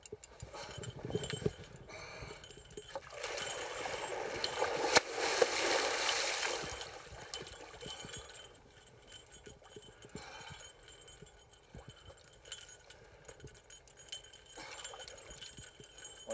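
Water rushing and splashing for a few seconds in the middle, among scattered light clicks and clinks of fishing gear being handled.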